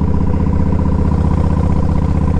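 Yamaha Road Star 1700's air-cooled V-twin engine running steadily under way at cruising speed, with an even, unbroken pulse.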